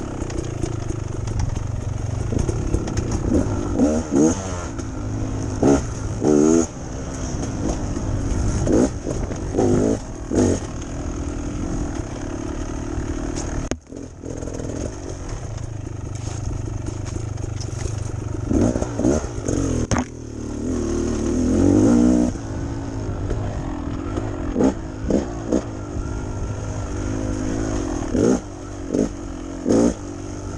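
Beta Xtrainer two-stroke dirt bike engine running under a rider on a trail, revving up and down with repeated throttle blips and easing off, with a brief sharp drop about halfway through.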